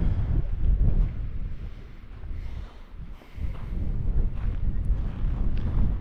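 Wind buffeting the microphone: a gusty low rumble that eases off briefly around the middle, then picks up again.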